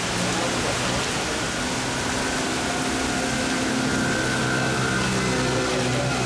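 Steady hiss of rain and gusting wind in the trees during a storm, with a low vehicle engine hum underneath.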